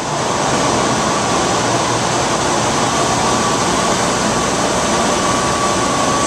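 Loud, steady drone and hiss of running machinery on a central heating and cooling plant floor, with a faint steady high whine.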